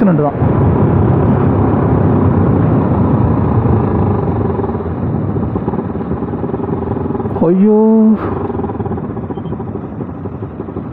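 Single-cylinder engine of a Bajaj Pulsar NS200 motorcycle running steadily at highway speed, with wind rush on the rider's camera mic. A short held voice-like tone comes in about seven and a half seconds in.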